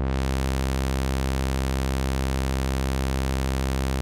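Low sawtooth note from a modular synthesizer, held on one pitch through a Q107a state-variable low-pass filter. The cutoff is opened right at the start, so the tone turns bright with its full set of harmonics. Near the end the cutoff starts to come back down and the top of the sound dulls.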